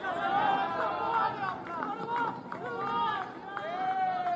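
Several men's voices shouting overlapping calls across a cricket field as the batsmen run between the wickets, some calls drawn out and held.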